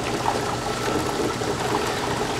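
Steady rush of water inside an impact-of-jet apparatus: the pumped jet from the nozzle striking a 45-degree impact plate and splashing and draining in the clear cylinder.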